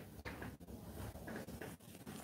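Faint rustling and scratching from hands moving at a desk, small irregular handling sounds.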